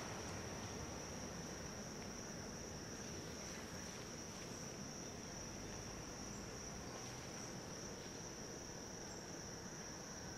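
Insect chorus: a steady, unbroken high-pitched trilling tone, over a faint low background rumble.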